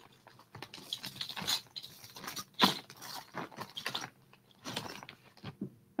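Rummaging through plastic bags of jewelry: faint, irregular rustles and small clicks.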